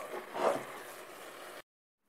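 Wooden spoon stirring minced meat and onion frying in a stainless steel pot: a steady sizzling hiss with a scrape of the spoon about half a second in. The sound cuts off abruptly a little before the end.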